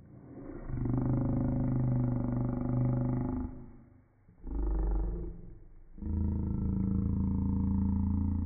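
Slowed-down voices, stretched by slow-motion playback into deep, drawn-out tones. There are three long stretches: one from about half a second in, a short one near the middle, and one from about six seconds in.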